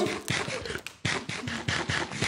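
Close-up mouth noises of biting and chewing hard, frozen fruit-lace candy: a run of many small irregular clicks mixed with breathy noise.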